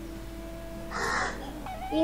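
A crow cawing once, a short harsh call about a second in, over a faint steady hum.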